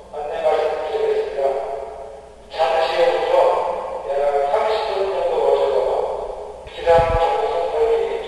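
A building public-address broadcast, a recorded voice in phrases of about two seconds with short breaks between them, sounding like an alarm announcement.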